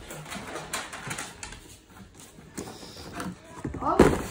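Cardboard shoebox being handled and opened on a wooden table: scattered light scrapes, taps and rustles.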